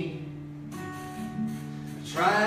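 Acoustic guitar strummed, chords ringing, with a fresh strum about a third of the way in.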